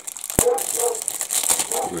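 Clear plastic parts bag crinkling and crackling as it is handled, with one sharp click about half a second in.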